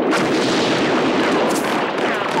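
Battle sound effects: continuous gunfire and artillery explosions, with a sharp blast about one and a half seconds in.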